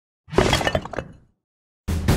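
Sound effect of something breaking and shattering: a quick cluster of cracks and clinks with a brief ringing, lasting about a second and dying away. A dense, low rumbling sound starts just before the end.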